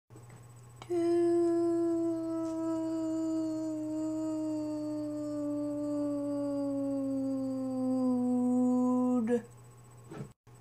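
A young woman humming one long, unbroken note for about eight seconds, starting about a second in, the pitch sinking slowly before it stops. It is a drawn-out hesitant "hmmm" from someone who doesn't know what to say.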